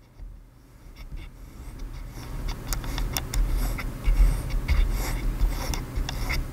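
Room noise, with an open window, picked up by a USB condenser microphone whose gain knob is being turned up to maximum: the background noise rises steadily in level. Small clicks and rubbing come from fingers on the wobbly gain knob, and a low rumble is strongest midway.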